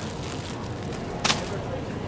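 Steady supermarket background noise, with a single short sharp click a little past the middle.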